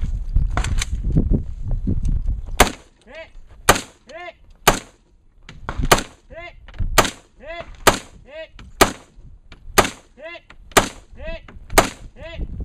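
An AR-style semi-automatic rifle fires about ten shots, roughly one a second, starting a couple of seconds in. Most shots are followed by a short ringing ping. A low rumble comes before the first shot.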